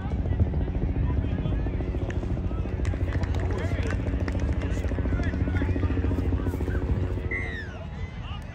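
A low, steady mechanical drone with a pulsing texture, like an engine or rotor, carrying under outdoor voices; it drops away near the end.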